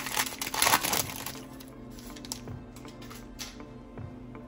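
Foil trading-card pack wrapper crinkling as it is torn open and peeled back, loudest in the first second, then fainter rustling.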